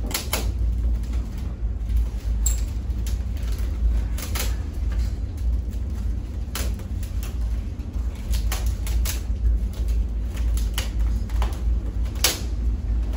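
Rattan chair frame creaking and snapping as it is wrenched apart by hand: irregular sharp cracks and clicks, about one every second or two, over a steady low rumble.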